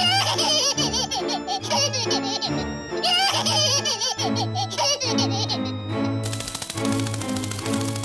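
Cartoon bat character wailing and sobbing in several long cries, its voice wavering up and down, over background music. The crying stops about six seconds in and the music carries on.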